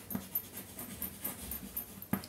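Chalk writing on a blackboard: a run of short, irregular scratches and taps as a word is written.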